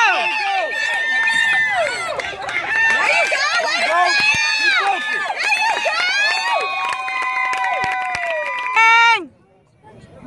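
Spectators yelling and screaming during a football run play: many high-pitched voices overlapping, some held in long drawn-out shouts. It peaks loudest just before the end and then cuts off suddenly.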